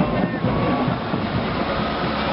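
Steady, dense din of a street parade with a low rumble, crowd and passing marchers blurred together.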